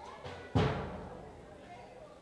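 A single deep, drum-like thump about half a second in, dying away over about a second.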